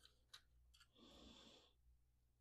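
Near silence, with a few faint clicks from the hotend being handled and fitted into the 3D printer's toolhead, and a soft breath about a second in.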